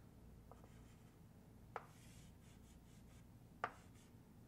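Faint chalk drawing on a chalkboard: a soft tap about half a second in, a sharper tap a little before two seconds, a light scratch after it, and another sharp tap near the end.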